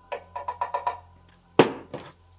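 A small plastic scoop tapped about six times in quick succession against a plastic blender jar, knocking powder off. A sharp, louder knock follows about a second and a half in.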